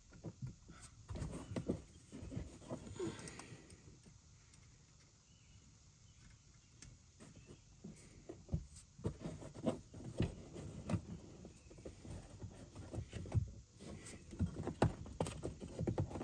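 Scattered light clicks and knocks from hands handling a car speaker and its plugged-in wiring, with a quiet stretch in the middle and busier handling near the end.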